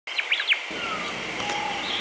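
Birdsong: a few quick high chirps in the first half-second, then a couple of longer whistled notes, one gliding down in pitch, over a steady background hiss.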